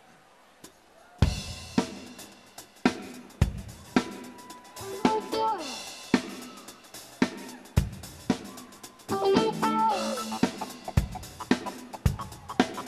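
Live rock band starting a song: the drum kit comes in about a second in with a beat of kick drum, snare and hi-hat, and pitched instrument lines with sliding notes join partway, growing fuller toward the end.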